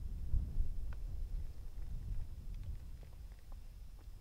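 Low, gusty rumble of wind buffeting the camera microphone, with a few faint clicks.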